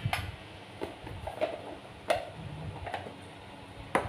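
About half a dozen light, scattered clicks and knocks from a spoon and plastic flour container being handled at a stainless steel mixing bowl.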